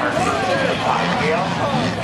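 Race car engines running around a dirt track, with voices talking over them.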